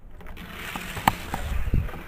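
The plastic starting gate of a Hot Wheels gravity-drop track is worked by hand, with a sharp click about a second in. The die-cast car rattles as it rolls down the plastic track, and there is a low rumble near the end.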